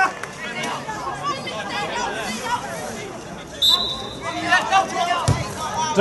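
Players and a small crowd of spectators chattering and calling out around an open football pitch. A short, steady whistle blast comes a little past halfway, and a single thud of a football being kicked comes near the end.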